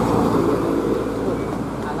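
Tour bus's diesel engine running steadily as it pulls up a hill toward the listener, a low drone with a steady hum over it.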